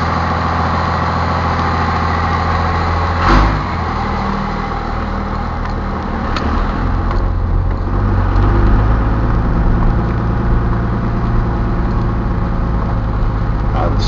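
Dodge Ram's Cummins inline-six turbo diesel heard from inside the cab, running cold at idle and then pulling away at low speed, the engine sound growing louder about halfway through. One short clunk about three seconds in.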